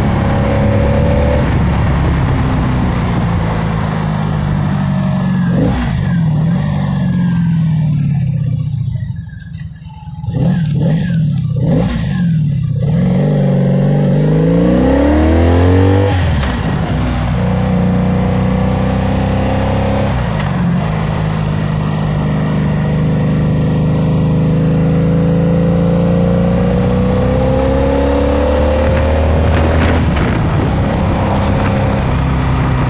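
Honda Magna 700's V4 engine heard from the rider's seat while under way, with wind noise. Its pitch climbs and drops several times as it goes up through the gears, falls quieter briefly about ten seconds in, then settles into a steady cruise with slowly rising pitch.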